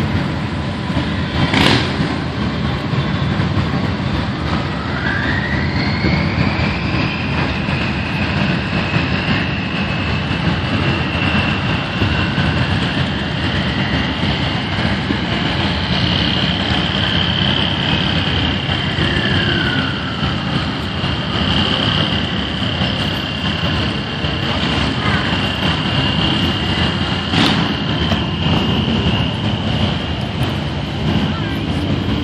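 Vehicle engines and tyres rumbling steadily in a slow-moving parade, with a long high whine that rises about five seconds in and then holds. A sharp click comes about two seconds in and another near the end.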